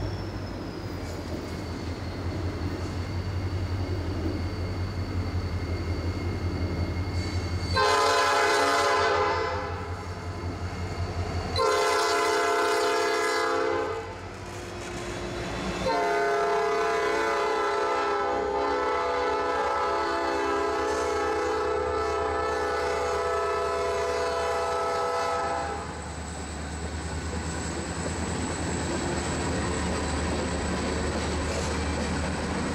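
Norfolk Southern SD40-2 diesel locomotive approaching and passing with its EMD 645 16-cylinder engine running, sounding its multi-chime air horn three times: two long blasts about eight and twelve seconds in, then one held for about ten seconds as the locomotive goes by. After the horn stops, the low rumble of the engine and the train rolling past carries on.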